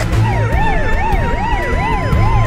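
Police car siren sound effect wailing fast up and down, about two to three sweeps a second, over a steady held tone.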